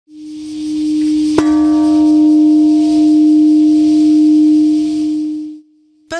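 Large Japanese temple bell (bonshō) struck with a suspended wooden log, ringing with a deep steady hum over a steady high hiss. A fresh strike lands about a second and a half in, adding a sharp clang and several higher ringing tones, and the sound cuts off abruptly near the end.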